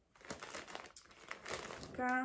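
Brown paper shopping bag crinkling and rustling in a series of crackles as a hand rummages inside it.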